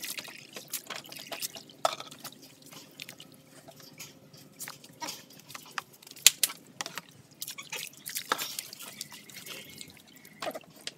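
Water splashing and dripping in a plastic basin as a puppy is washed by hand, in scattered small irregular splashes, with one sharper, louder sound about six seconds in.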